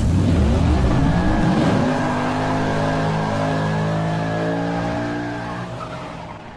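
Sound-effect sports car engine revving, its pitch climbing over the first two seconds and then holding a steady high note before fading away near the end.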